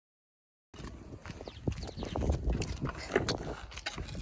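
Silent for under a second at a cut, then footsteps in sandals on sandy ground with the knocks of a carried bucket of water.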